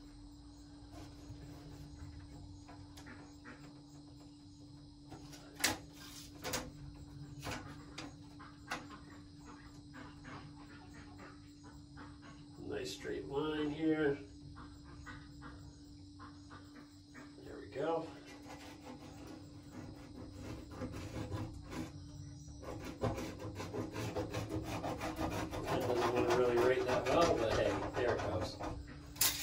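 Pencil scratching along a tape measure across a plywood wall as a line is marked, a faint rubbing that grows louder over the last few seconds, with a few light clicks earlier on.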